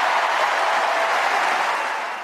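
Tennis crowd applauding a won point, a steady, loud wash of clapping.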